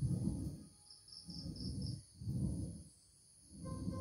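Ab wheel rolling on a rough concrete floor, a low rumble about once a second as it is pushed out and pulled back, with a short pause near the end.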